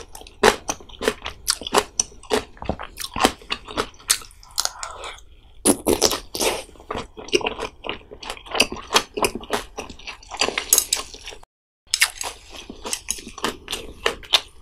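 Close-miked chewing of spicy pollack roe soup: a quick, irregular run of wet clicks, smacks and crunches from the mouth. There is a brief silent break about three-quarters of the way through.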